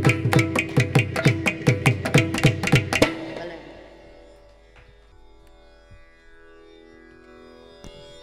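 Mridangam and ghatam playing rapid, evenly spaced closing strokes of a Carnatic piece over a tanpura drone, stopping abruptly about three seconds in. After that only the tanpura drone continues, softly.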